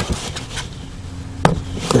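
3D-printed plastic vent deflector being pushed and snapped onto a rear floor air duct: a few short plastic clicks and knocks, the sharpest about one and a half seconds in.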